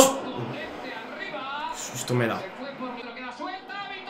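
Faint television football broadcast playing in the background: a commentator's voice in short phrases over steady crowd noise.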